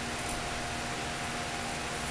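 Steady background hiss with a faint steady hum: room tone.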